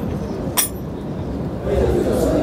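A single sharp clink about half a second in, over a steady low rumble of background noise.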